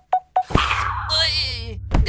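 Cartoon sound effects: a quick run of short pitched blips, about six a second, stopping about half a second in. Then a sudden burst and a loud, wavering, high-pitched wail over a steady low drone, as the virus character is struck.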